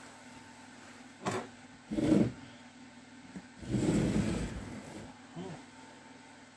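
A Zündapp KS 600 gearbox casing being handled and turned over on a workbench. A sharp knock comes about a second in, a heavier clunk follows, then a longer rumbling scrape around the middle as the casing is shifted across the board.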